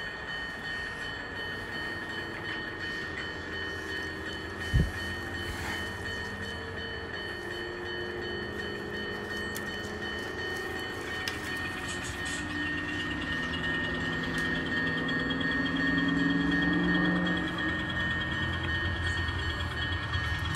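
N scale model locomotive running on the layout, its sound rising in pitch and loudness from about twelve seconds in as it starts to pull forward. A single knock comes about five seconds in.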